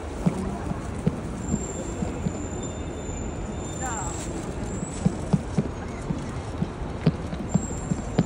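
Footsteps of many pedestrians on stone paving, a scatter of irregular short knocks, over a steady murmur of a street crowd.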